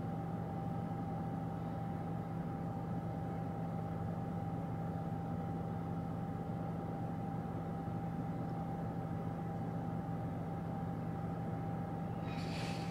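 Steady low hum with a thin, constant higher tone inside a car's cabin, unchanging throughout.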